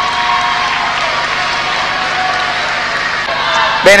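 Audience applauding steadily, without a break, until a man's voice over the public address begins near the end.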